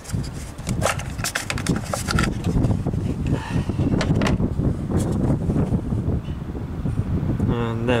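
Sharp plastic clicks and rattles as the engine-bay fuse box cover of a Nissan Note is unclipped and lifted off, in two clusters, the first about a second in and the second around the middle, over a steady low rumble.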